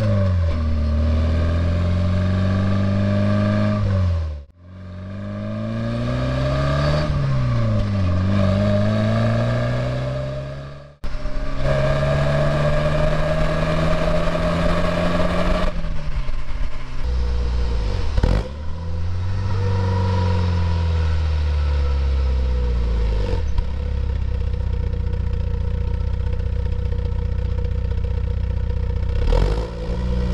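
Porsche 944's inline-four engine under acceleration on the road, its note rising through each gear and dropping at each upshift, several times over, over tyre and road noise. The audio cuts out abruptly twice.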